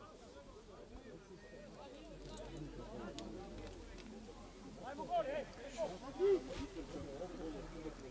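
Faint, distant shouts and calls of footballers on the pitch, with a few louder calls about five to six seconds in.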